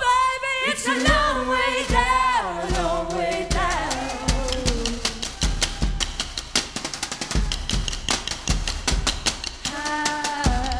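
Live band: a long wordless sung note that wavers and slides downward over the first few seconds, then a driving percussion break of low stomping drum beats under fast rattling, clicking strikes. A held sung chord comes back in right at the end.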